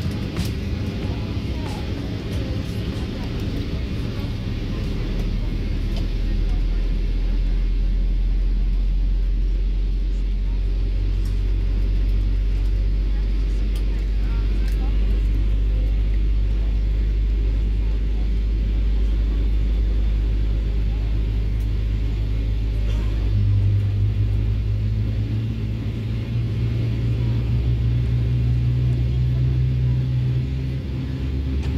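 GE90-115B turbofan of a Boeing 777-300ER starting up, heard from inside the cabin: a steady deep drone with low tones. Later a second, higher hum swells and creeps up in pitch as the engine spools.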